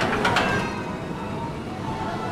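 Ride machinery of a boat dark ride running: two or three sharp clattering knocks in the first half second, then a steady rumble.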